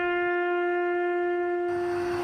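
Music: one long held note, steady in pitch and rich in overtones, from a wind or brass instrument closing a patriotic song. A hiss joins it near the end.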